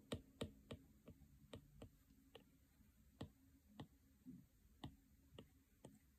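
Apple Pencil tip tapping on an iPad's glass screen with short shading strokes: faint, irregular clicks, about two a second in the first two seconds, then sparser.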